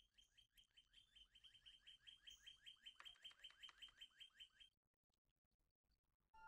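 Faint bird call: a fast, even run of short chirps, about six a second, each dropping in pitch. The chirps grow slightly louder, then stop about four and a half seconds in.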